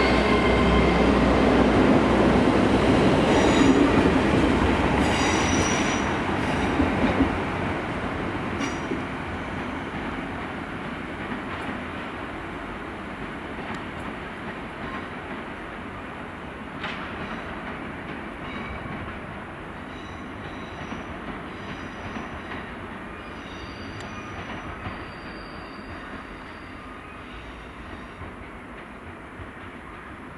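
Great Western Railway Intercity Express Train running close past the platform, loud at first and fading over several seconds. Then another Intercity Express Train runs in over the pointwork, with several brief high wheel squeals on the curves.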